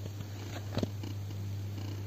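A steady low hum, with a couple of faint taps about half a second and just under a second in.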